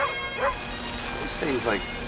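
Bagpipes playing with their steady drone, with a dog's short yips over them at about the start and again half a second in.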